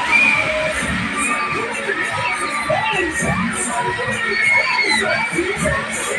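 Riders on a spinning fairground ride screaming and shouting together, many voices overlapping and rising and falling in pitch.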